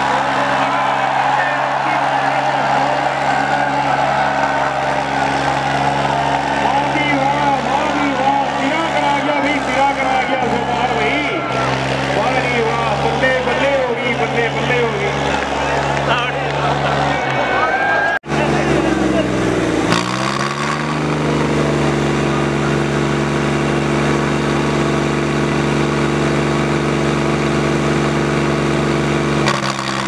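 Diesel engines of two tractors, a Deutz-Fahr and a New Holland, running hard under load in a tractor tug-of-war, with voices over them for the first half. A little after halfway the sound cuts out for an instant; the engine note then dips, climbs back, and holds steady to the end.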